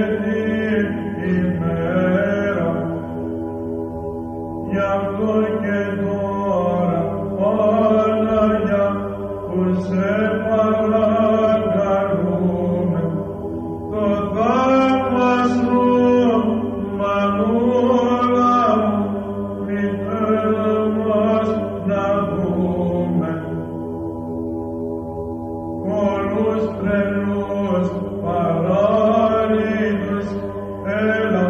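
Greek Orthodox Byzantine church chant: voices sing a melodic hymn line in phrases over a steady held low drone note.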